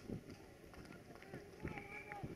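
Distant shouts and calls of players and spectators across an open football ground, one call held briefly near the end, with a few faint knocks.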